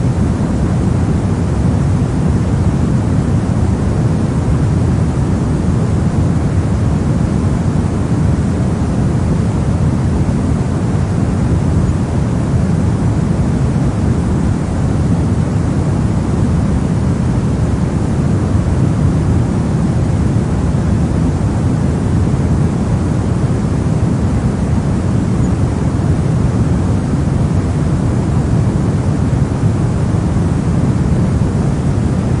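Steady pink noise: an even, unbroken rushing hiss, heaviest in the deep end and thinning toward the treble, played as a sleep sound for babies.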